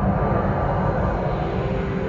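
Soundtrack of a projected city presentation played through theatre speakers: a dense, steady rushing rumble with faint ambient music under it.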